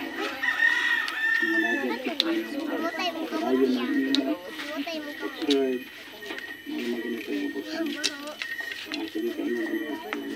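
A rooster crowing, one long call starting about half a second in, with more fowl calls following over background voices.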